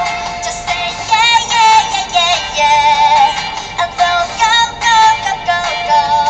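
A young woman singing a pop melody solo into a handheld microphone, in short phrases with long held notes sung with vibrato.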